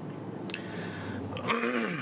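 Steady road and tyre noise inside a Tesla's cabin, with a faint click about half a second in. Near the end a man clears his throat with a low sound that falls in pitch.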